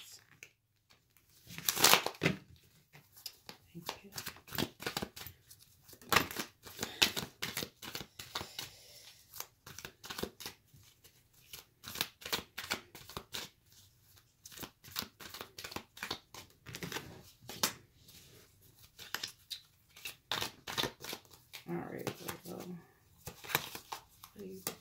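A deck of tarot cards shuffled by hand: quick papery strokes of cards slipping and dropping onto the deck, in spells with short pauses between.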